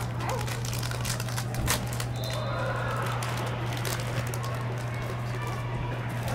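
Crinkling and clicking of a snack packet being handled and opened, the crackles densest in the first couple of seconds, over a steady low hum.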